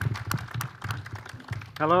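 Microphone handling noise as the handheld microphone is lifted off its podium stand: a rapid run of clicks and knocks over a low rumble. Near the end a man says "Hello" into it.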